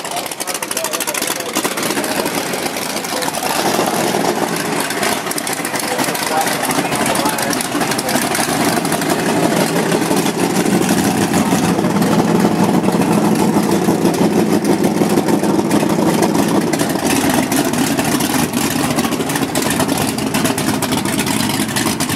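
A Chevrolet S10 pickup's engine running close by as the truck rolls slowly forward, with another car's engine idling alongside. The engine sound grows louder about four seconds in and again from about eight seconds.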